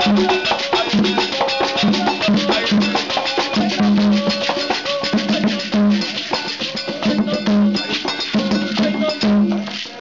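Afro-Cuban ceremonial percussion: beaded gourd shekeres shaken in a steady rhythm, with drums and a bell.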